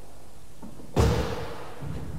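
A car door slammed shut once, about a second in: a single heavy thud with a short ring after it.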